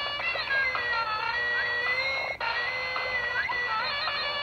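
A DX Yo-kai Watch Type Zero toy playing its electronic tune for an inserted Slippery-tribe medal: a steady drone under a wavering melody. The short loop breaks off briefly a little past halfway and starts over.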